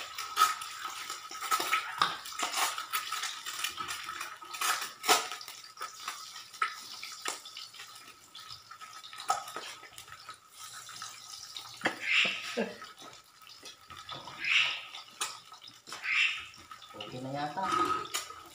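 An egg frying in hot oil in a pan, sizzling steadily with many small crackles and pops, thickest in the first few seconds.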